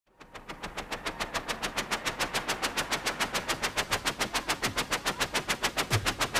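Opening of an electronic dub track: a fast, even pattern of electronic hi-hat-like ticks, about eight a second, fading in and slowly getting louder.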